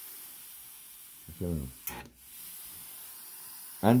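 Steady hiss of steam jetting from a New-Tech industrial steam iron. It breaks off sharply about two seconds in and then starts hissing again.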